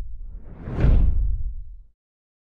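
Transition whoosh sound effect: a rush of noise over a deep rumble that swells to a peak a little under a second in, then fades away just before the end.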